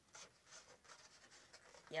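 Faint scratchy rubbing and creaking of a styrofoam clamshell container as its lid is pressed shut, in a few brief scrapes.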